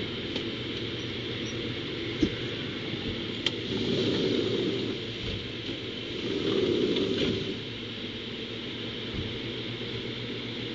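Steady background noise: a constant hiss under a low rumble that swells twice, about four and seven seconds in, with a couple of faint clicks.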